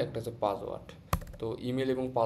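A single sharp keystroke on a computer keyboard about a second in, amid a man's speech.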